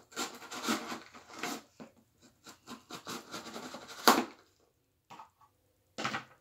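Small cardboard box being handled and pried open by hand: a run of scratching and rubbing of cardboard, loudest about four seconds in.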